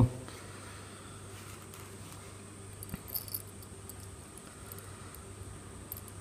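Faint clicks and light metallic rattles of small parts being handled: a brushless outrunner motor, its aluminium adapter plate and long threaded bolts. A few clicks cluster around the middle.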